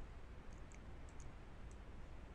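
A few faint, short computer mouse clicks over a low steady background hum.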